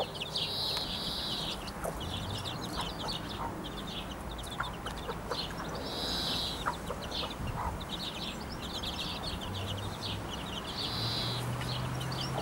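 Young chicks peeping, many short high-pitched calls in quick succession with a few longer ones, alongside a mother hen's low clucking.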